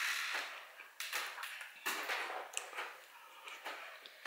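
A person blowing on a spoonful of hot soup, a short breathy rush at the start, followed by small clicks and mouth sounds as the soup is tasted from a ceramic spoon.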